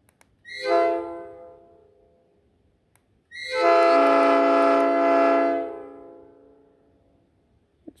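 A five-chime air horn, a copy of a Nathan Airchime P5 from a Speno rail grinder, running on about 90 PSI air and sounded twice on half stage: a short blast about half a second in, then a longer blast of about two and a half seconds. Each blast is a pretty nice and mellow chord of several notes, with the upper bells leading, and each fades out slowly.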